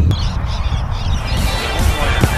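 Wind rumbling on the microphone, then background music with a regular beat coming in a little over a second in.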